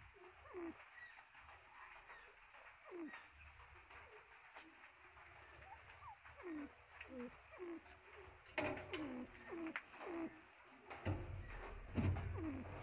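Soft, low bird calls: many short notes sliding downward, repeated every half second or so. A few sharp clicks come about nine seconds in, and a low rumble begins near the end.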